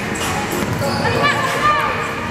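A basketball bouncing on the floor of a large indoor sports hall, with people's voices in the background.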